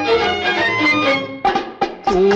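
Instrumental music from a Tamil film song, with drums under held instrumental tones and no singing. Near the end the music thins to a few sharp drum strokes.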